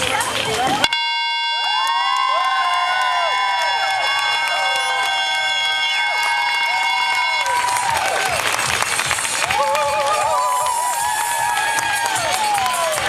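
Air horn sounding the start of the race: it comes in suddenly about a second in, holds one steady blast for about six seconds, then stops. A crowd cheers and whoops over it and keeps on cheering and clapping after it ends.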